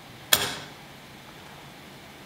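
A single sharp knock about a third of a second in, dying away quickly, over a steady hiss.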